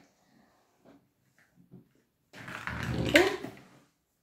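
A few faint plastic clicks as a Bakugan figure is snapped shut into its ball. About halfway through comes a louder sound lasting about a second and a half, with a bending, voice-like pitch.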